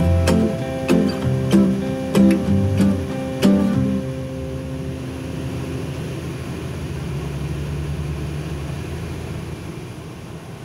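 Strummed acoustic guitar music, which stops about four seconds in. After that only a steady low hum of a moving bus is left, heard from inside the cabin.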